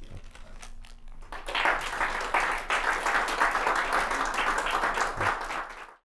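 Audience applauding, starting about a second and a half in and dropping away right at the end.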